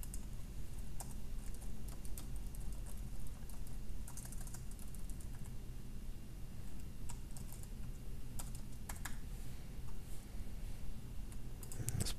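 Typing on a computer keyboard: short clusters of key clicks separated by pauses of a second or two, as a line of code is keyed in.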